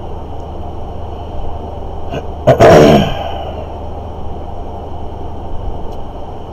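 A man coughs once, loudly and briefly, about two and a half seconds in, over a steady low hum.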